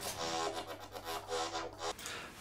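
Yoshimi software synthesizer playing a sustained lead note, its volume swelling and fading several times as it is driven by breath pressure from a DIY optical breath sensor.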